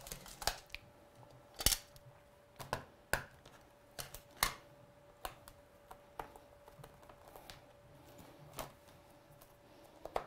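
Irregular light clicks and knocks of an acrylic stamp-positioning platform and its magnets being handled as its plate is lowered and pressed down to stamp a card, the loudest knock about a second and a half in, over a faint steady hum.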